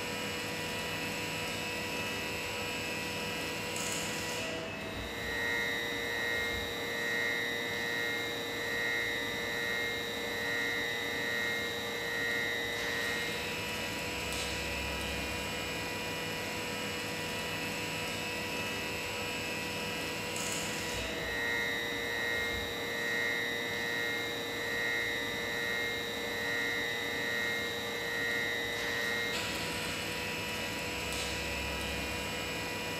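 A steady electric hum with several high whining tones. The tones shift about every eight seconds in a repeating cycle, and a soft throb about once a second comes in during alternate stretches.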